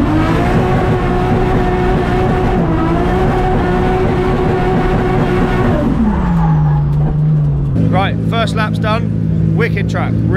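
Drift car's engine held at high, steady revs, then revs falling away about six seconds in as the driver lifts off. Near the end the sound cuts to a steady low hum under a voice.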